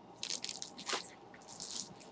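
A sheet of letter stickers in its glossy packaging rustling in three short bursts as it is handled and moved.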